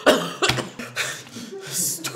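A person's sharp cough-like vocal burst, followed by short throaty vocal noises, with a brief hiss just before the end.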